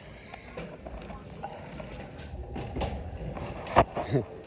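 Shopping cart rolling on a store floor, a low rumble, with one sharp knock near the end.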